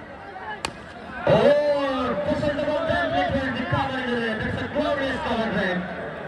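A cricket bat strikes the ball with a single sharp crack about half a second in, followed by loud men's voices calling out over a crowd.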